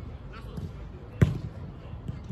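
A football struck once with a sharp thud about a second in, over the low background of an outdoor pitch.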